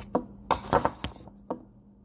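A spoon knocking and scraping against an open peanut butter jar while digging into it, a quick run of sharp clinks and clicks over the first second and a half, then quiet.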